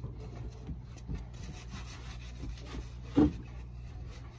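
Gloved hands scraping and packing snow on a table top, a soft rubbing and crunching, with one dull thump about three seconds in.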